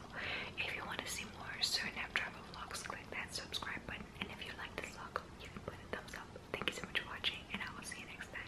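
A woman whispering close to the microphone, soft breathy speech without voice.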